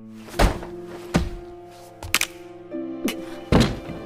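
Dull punches landing on a body, about five thuds at uneven intervals, over a held, sustained music score.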